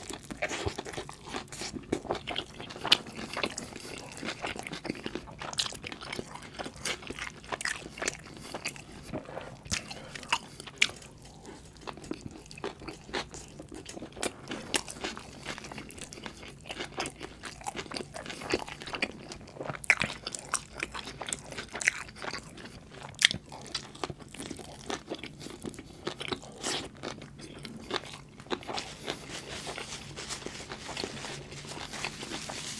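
Close-miked chewing and biting of a bacon cheeseburger: mouth sounds with many short, irregular clicks and snaps, with no talking.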